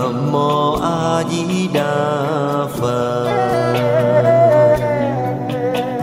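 Buddhist devotional chant sung as music, a voice holding long wavering notes over instrumental accompaniment.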